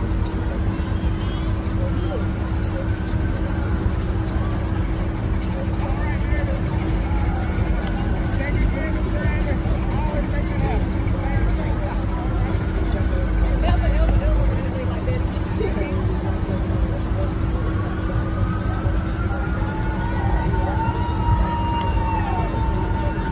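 Street parade sounds: distant voices and music mixed with passing parade vehicles over a steady low rumble and hum. Near the end a longer held tone sounds.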